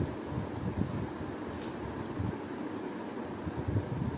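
Steady, low rumbling background noise with soft, irregular low thumps.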